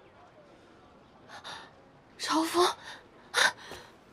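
A person gasping, in three bursts: a faint breath about a second in, a louder gasp with a voiced cry halfway through, then a short sharp intake of breath near the end.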